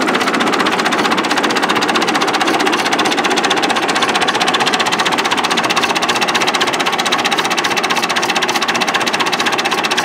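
Massey Ferguson 165's four-cylinder diesel engine idling with an even, rapid clatter.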